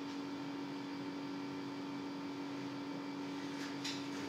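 Steady low electrical hum and hiss of room noise on a video-call line, with a faint click near the end.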